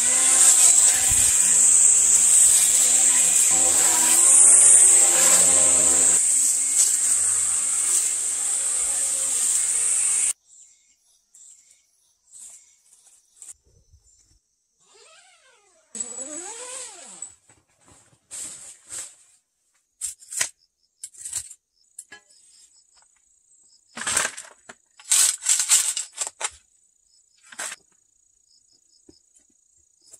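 String trimmer running, its line whirring steadily through grass with a change in pitch about four seconds in, then cutting off abruptly about ten seconds in. After that come faint scattered knocks, a brief rising scrape, and near the end a cluster of sharp scrapes and knocks.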